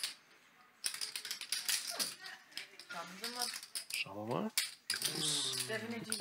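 Poker chips clicking and clattering as a player pulls a larger bet out of his chip stack, starting about a second in, with quiet talk at the table over it.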